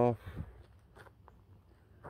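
A man's voice finishes a word, then a few faint, irregular crunching steps on the ground.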